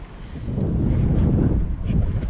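Wind buffeting the microphone of a handheld camera: a low rushing noise that swells up about half a second in and stays loud.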